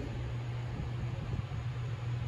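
A steady low hum under an even background hiss, with no distinct events.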